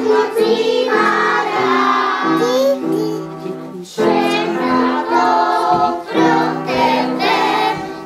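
A group of children's voices singing a children's song, in sung lines with a short break a little past three seconds in before the next line begins.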